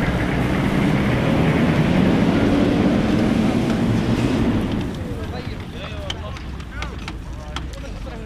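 Military Humvee's diesel engine running as it drives past at close range and pulls away over gravel, with a dense rumble of engine and tyres. The engine sound ends about five seconds in.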